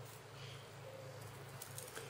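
Faint snips of scissors cutting thin paper, a few light clicks near the end, over a low steady hum.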